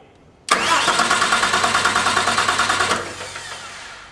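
Heavy-duty electric starter cranking a diesel engine, the starter under full cranking load. It cuts in suddenly about half a second in with a fast, even pulsing, runs for about two and a half seconds, then is released and spins down, fading toward the end. The engine does not start.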